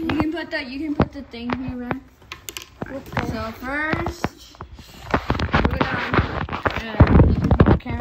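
A person's voice without clear words, in short murmured stretches, over scattered knocks and clicks from handling. In the last few seconds the handling grows into a denser run of rustling and clatter.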